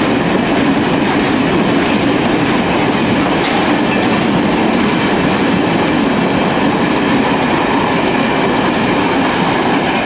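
Freight train of four-axle Uacs cement wagons rolling past at close range: a loud, steady rolling noise of wheels on rail, with faint repeated clicks from the bogies.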